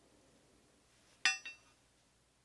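Steel claw bar clinking against a steel tube as the two parts are fitted together: two bright metallic clinks with a short ring, about a second in, the first the louder.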